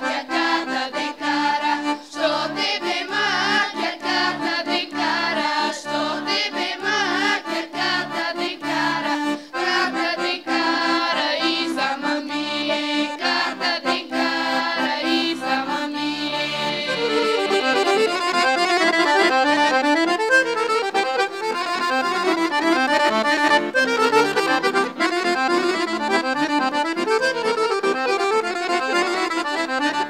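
Girls' choir singing a Bulgarian folk song to accordion accompaniment, the accordion keeping a steady bass-and-chord rhythm. About 17 seconds in the voices drop out and the accordion plays a fast instrumental passage on its own.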